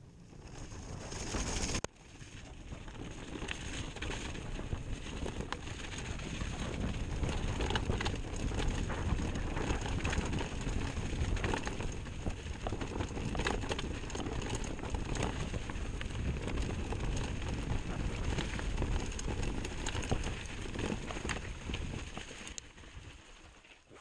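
Mountain bike descending a dirt and leaf-littered trail at speed: tyres rolling over the ground with frequent clicks and knocks of the bike rattling over roots and stones, and wind rumble on the camera microphone. The noise builds after a brief drop about two seconds in and fades near the end.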